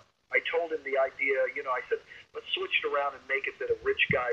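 Speech only: a man talking in a continuous stretch with brief pauses.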